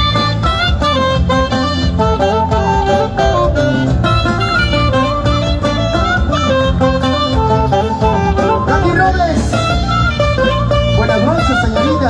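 Live band playing an instrumental passage with a steady beat: a flute carries the melody over guitar, saxophone, bass and drums.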